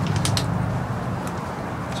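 A steady low hum of outdoor background noise, with a few light clicks in the first half-second.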